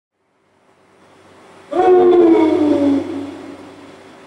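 A male voice chanting one long note that starts suddenly about two seconds in, slides slowly downward in pitch and then fades, part of a vocal improvisation on a Khorku death song.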